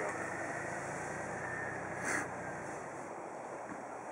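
Nissan Xterra's engine running with a low, steady hum that drops away about three seconds in, with a short burst of noise about two seconds in.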